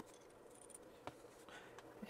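Near silence: room tone with a few faint light clicks as a small metal puzzle piece, a handle rod, is handled.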